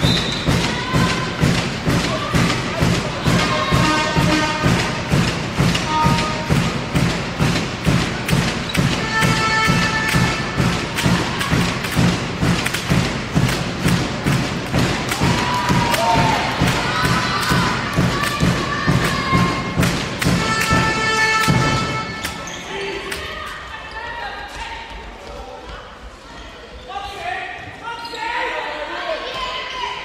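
Handball spectators' drumming: a steady drum beat of about two strokes a second under chanting voices, stopping suddenly about two-thirds of the way through and leaving the crowd's voices and shouts.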